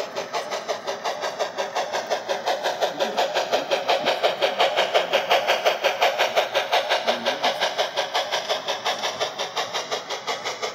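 HO scale model train running, heard from a flatcar riding in the train: a steady rhythmic beat of about six pulses a second, loudest around the middle.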